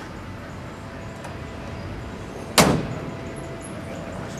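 The upward-hinged door of a Rapier Superlite SLC supercar being pulled down and shut, closing with a single sharp thud about two and a half seconds in.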